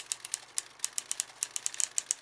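Logo-sting sound effect: a rapid, slightly irregular run of sharp clicks, like typewriter keys, about eight to ten a second, as the letters of an animated logo shuffle into place.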